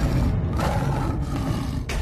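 Tiger's roar as a dubbed-in sound effect: a long, low, noisy sound, with a sharp hit near the end.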